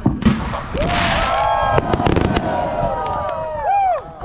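Fireworks going off: a sharp bang at the start, then more reports and cracks about two seconds in over a rushing noise, with long gliding pitched sounds through the middle that bend down near the end.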